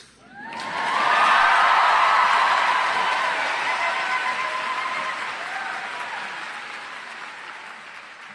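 Large audience applauding and cheering, swelling up within the first second and then slowly dying away.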